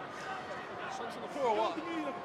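Indistinct men's voices around a rugby ruck, picked up by the referee's microphone, with one louder call about one and a half seconds in, over steady stadium background noise.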